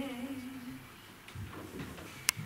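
A young woman singing a Romanian doina unaccompanied: a long held, slightly wavering note fades out about a second in, leaving a short pause with faint room noise.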